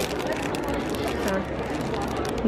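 Clear acrylic display case and the rolls of tape inside it being handled, giving a quick run of small plastic clicks and knocks, over a murmur of crowd chatter.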